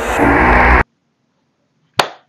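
A swelling sound-effect rise in the closing soundtrack of the played video: a rushing swell with a low steady tone under it, growing louder and cutting off abruptly just under a second in. A single sharp click comes at the very end.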